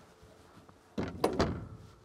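Cargo door of a Pilatus PC-6 Porter being worked: a sudden clunk about a second in, then two quicker knocks that fade out.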